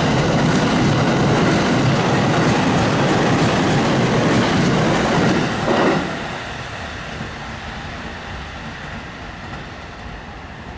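Electric commuter train passing close by at speed, wheels running on the rails. The sound drops sharply about six seconds in as the last car passes, then fades away as the train recedes.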